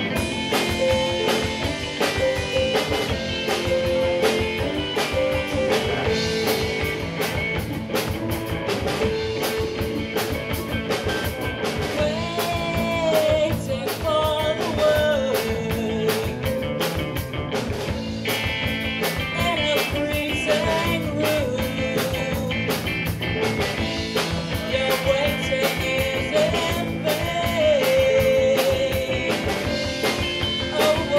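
A live rock band playing: electric guitar, bass guitar, keyboard and drums, with a woman's lead vocal coming in about twelve seconds in and running on.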